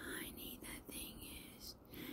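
Faint whispering: breathy, unvoiced speech in short broken bursts.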